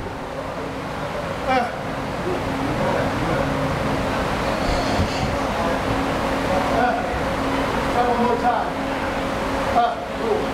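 Steady gym room noise with a constant hum, faint voices now and then, and a single soft knock about five seconds in.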